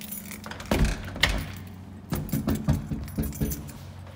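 Clattering knocks and rattles from a phone being handled and carried, in a quick cluster about a second in and a faster run in the second half, over a steady low hum.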